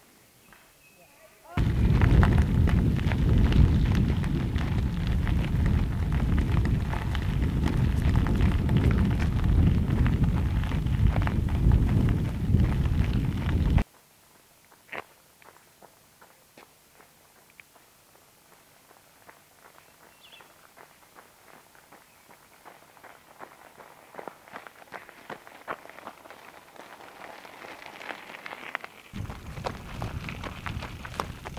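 Wind buffeting the microphone: loud, dense low noise that starts suddenly and cuts off about twelve seconds later. Then it goes quiet, and runners' footsteps crunch on a gravel trail, growing louder as they come closer. Near the end the loud low noise starts again.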